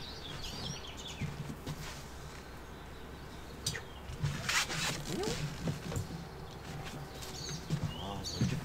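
Outdoor ambience with small birds chirping in short high calls near the start and again near the end. A couple of brief rustling noises about halfway through are the loudest sounds, over a low steady hum.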